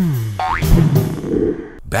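A comic cartoon-style transition sting with music. It starts with a falling pitch glide, then a quick rising glide, then a louder rushing burst that fades away.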